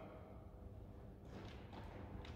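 Faint footsteps on a wooden gym floor over a low steady room hum, with a few soft taps in the second half.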